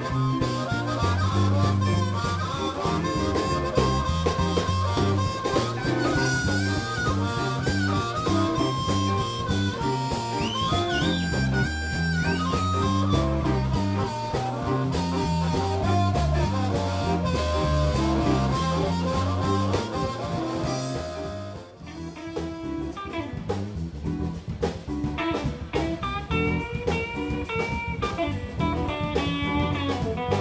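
Live blues band: a harmonica played into the vocal microphone takes a solo of long held and bent notes over electric guitar, bass and drums. A little past two-thirds through, the sound drops off briefly and a thinner passage follows, led by electric guitar.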